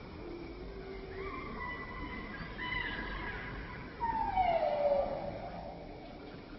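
Macaque calls: a steady high-pitched cry from about a second in, then a louder scream that falls in pitch about four seconds in.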